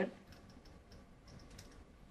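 Faint, scattered clicks and taps from a pen stylus on a tablet as a line is drawn on the screen, with low room tone between them.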